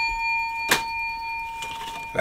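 A bell's single ring fading slowly away, with one sharp click about three-quarters of a second in.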